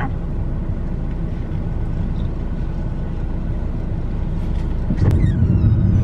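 Steady low rumble of a car, heard from inside its cabin. About five seconds in there is a sharp click, and the rumble grows louder.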